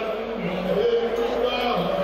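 Voices singing in long held notes, at more than one pitch at once: a song accompanying a line dance.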